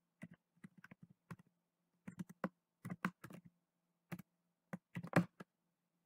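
Computer keyboard typing: irregular runs of quick keystrokes with short pauses between them.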